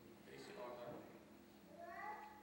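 A faint voice, heard twice in short phrases with a wavering, rising pitch: once about half a second in and again near the end.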